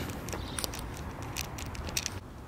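Faint footsteps and phone handling noise: a few soft, irregular clicks over low background noise.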